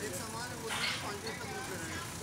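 Several people talking over the low, steady running of a JCB backhoe loader's diesel engine, with a short burst of noise a little under a second in.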